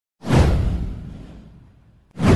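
A whoosh sound effect from an intro animation, with a deep boom under it. It hits suddenly about a quarter second in, sweeps downward in pitch and fades out over about a second and a half.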